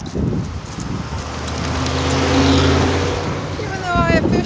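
A car driving past, its engine and tyre noise building to a peak a little past halfway through and then easing off.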